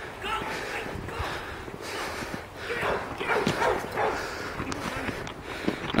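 A dog barking several times in short calls spread through the few seconds, mixed with distant shouting voices.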